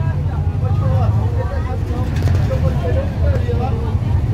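Engine of a small vehicle being ridden, running steadily with a low rumble as it moves along, and faint voices over it. The rider says the motor is starting to act up.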